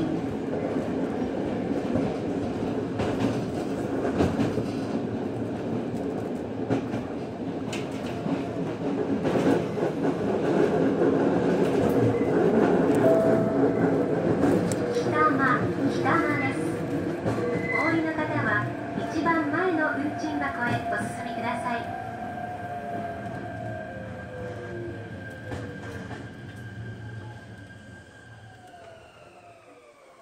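Electric commuter train running, heard from inside the rear cab: steady rumbling running noise, short high wheel squeals on a curve in the middle, then an electric motor whine falling in pitch as the train brakes. The sound dies away as it comes to a stop at a station.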